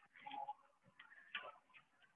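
Near silence with a few faint clicks and light handling noises as a resistance band is picked up and set under the feet.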